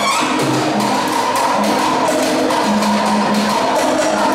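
Live Uruguayan plena band playing an instrumental passage: an electric bass line moves in steps under a steady, even rhythm of congas and other hand percussion.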